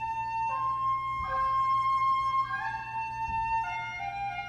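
Solo woodwind, flute-like, playing a slow melody in long held notes that step up and down in pitch.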